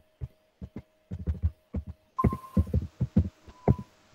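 Computer keyboard keystrokes: quick irregular runs of dull taps as a word is typed, with near-silent gaps between the runs.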